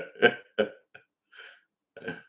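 A man laughing: a few short, breathy chuckles, the first ones loudest, dying away within about a second and a half, then one more brief chuckle at the end.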